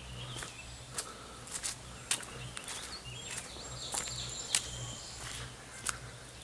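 Footsteps walking along a damp dirt-and-rock forest trail, a step about every two-thirds of a second, with faint bird chirps in the background.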